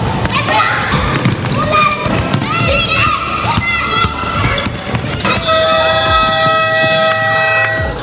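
A basketball being dribbled on an indoor court floor, with children's voices and short high squeaks. A steady held tone sounds for about two seconds in the second half.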